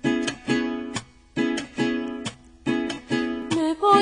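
Rhythmic strummed chords on a small plucked string instrument. A woman's high, wavering singing voice comes in near the end.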